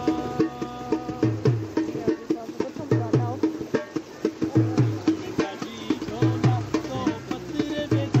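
Dhol, a double-headed barrel drum, played live in a steady driving rhythm of deep bass strokes with sharper taps between them, with a voice singing a song over it.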